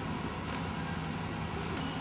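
Steady hum of distant road traffic, with no distinct events.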